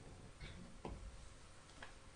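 Near silence: quiet room tone with a few faint, short clicks.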